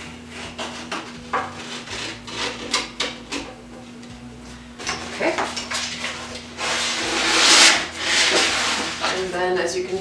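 An X-Acto knife scraping and clicking as it cuts contact paper along the inside edge of a wooden shelf. About seven seconds in comes a loud rustling of the paper sheet as it is handled and lifted, which lasts a couple of seconds.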